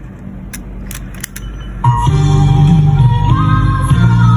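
A few faint clicks, then music played back from a cassette on an Aiwa JX879 walkman's reverse side starts suddenly about two seconds in. It is a playback check of the freshly serviced deck.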